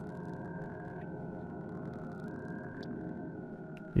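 Quiet, steady ambient synthesizer music with held notes that shift slightly in pitch now and then.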